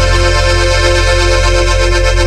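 Live regional Mexican band music: held accordion chords over a steady bass.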